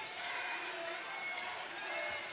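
Arena crowd murmur during basketball play: a steady hum of many faint voices in a large gym.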